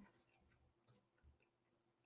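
Near silence: faint room tone with a few scattered faint ticks.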